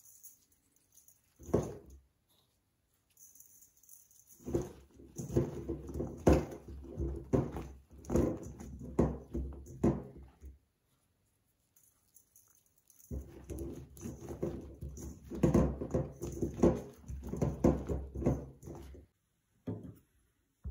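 Salted eggplant slices being tossed by hand in a stainless steel bowl, with irregular rustling and knocking of the slices against the ringing metal in two stretches of about six seconds each. A single knock comes about a second and a half in.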